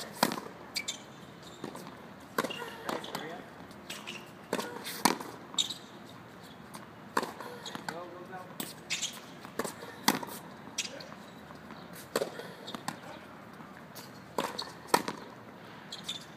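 Tennis balls being struck by rackets and bouncing on a hard court in a rally, sharp hits coming every second or two, some near and loud, some distant.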